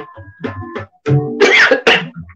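Tabla being played, with deep bass-drum strokes and ringing pitched strokes from the right-hand drum. A loud, harsh cough breaks over the drumming in the second half.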